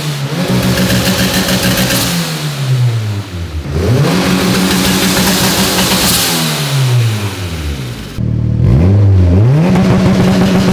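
Turbocharged non-VTEC Honda B18 four-cylinder in a Civic hatchback, on a hub dyno, held at a steady high rpm as launch control is set. The revs fall away and are quickly brought back up to the same held rpm, twice over.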